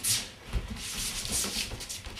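A dancer's feet brushing, sliding and stepping on a wooden floor in a few short swishes, with soft thuds of footfalls.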